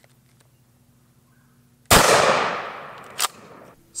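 A single shot from a 12-gauge Benelli Super Nova pump-action shotgun with a 28-inch barrel, firing 00 buckshot: one sharp report about two seconds in, its echo dying away over a second or so. A short click follows about a second later.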